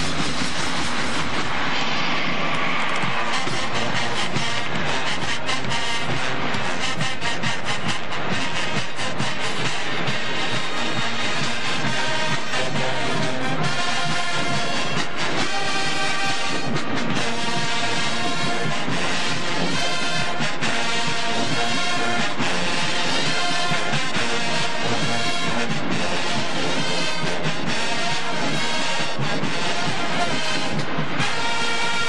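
Marching band playing: a drumline beats a steady cadence throughout, and a sousaphone-led brass section sounds held chords over it, standing out more clearly in the second half.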